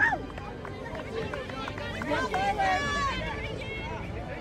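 Overlapping shouting and calling from sideline spectators and young players, unclear as words, with one loud short yell right at the start and a burst of several raised voices about two seconds in.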